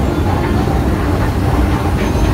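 Escalator running under a rider, a steady low mechanical rumble with some rattle.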